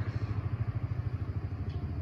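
A small engine running steadily, with a fast, even low putter.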